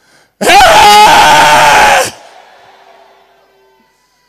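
A man's loud, drawn-out shout into a handheld microphone, so loud it overloads and distorts. It lasts about a second and a half, cuts off abruptly, and fainter noise lingers for a moment after.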